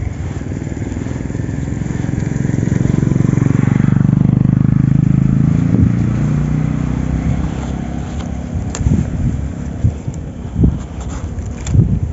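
A motor vehicle passing by: its engine hum swells over the first few seconds, is loudest about four to five seconds in, and then fades away. A few sharp clicks and taps follow near the end.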